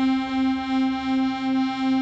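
Hohner piano accordion holding one sustained reed note, its loudness pulsing about twice a second. This is bellows vibrato: the player rocks the loosely held instrument so the bellows pulse the air through the reed.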